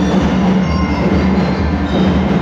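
A drum and lyre corps playing: marching drums keep up a steady rhythm while bell lyres ring out over them.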